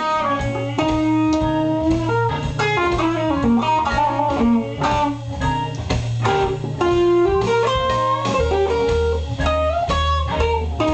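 Gretsch G5120 Electromatic hollow-body electric guitar played clean through a tube amp: a steady pulsing bass line picked under single-note melody lines. About eight and a half seconds in, the bass line steps down to lower notes.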